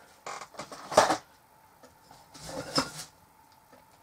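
Rummaging and handling household items, likely soup containers: a few short rattles, a sharp knock about a second in, then a longer rustling scrape near three seconds.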